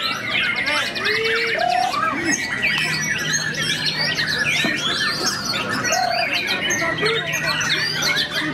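White-rumped shama (murai batu) singing: a dense, fast run of whistles, trills and chatter, mixed with the calls of other birds. A low steady hum sits underneath for much of the time.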